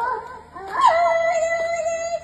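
A toddler singing into a microphone: a short pause about half a second in, then one long held note that begins with a quick rise in pitch.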